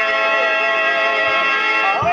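Harmonium accompaniment holding sustained reed notes, a steady chord, in the manner of Telugu padya-natakam stage music between sung verses.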